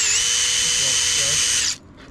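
Makita cordless drill running at speed to drive a metal screw eye into a plastic drain rod. It gives a steady high whine that sags briefly in pitch as it takes the load just after the start, then holds steady until the trigger is let go near the end and it cuts off suddenly.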